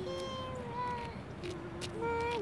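A young girl's voice chanting a prayer in long drawn-out notes: one held note sliding slightly down, then a lower one near the end.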